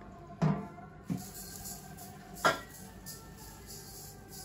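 A few light knocks and clinks of kitchenware as sugar is poured from a glass cup over pumpkin pieces in a steel bowl, over soft background music. The sharpest knock comes about two and a half seconds in.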